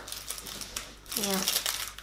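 Packaging crinkling and rustling as a small white packet is handled and unfolded by hand.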